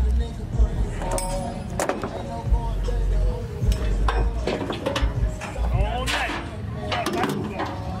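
Ratchet tie-down strap on a car trailer's wheel clicking and clinking as it is worked, with irregular clicks. A music beat with heavy, pulsing bass plays underneath and is the loudest thing.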